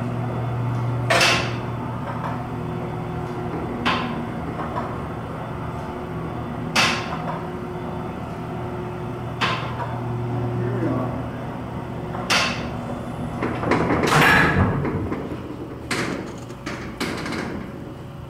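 Elevator car travelling in its hoistway, heard from the car top: a steady low hum with sharp clicks and knocks every two to three seconds, and a louder cluster of knocks about three quarters of the way through.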